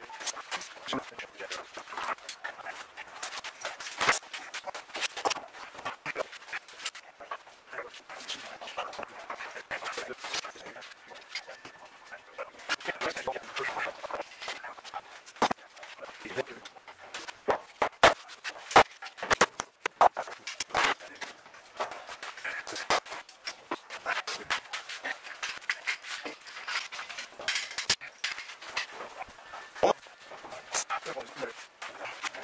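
Irregular sharp clicks and knocks of metal bar clamps being set and tightened along a glued wooden mast, several louder knocks coming in a cluster past the middle.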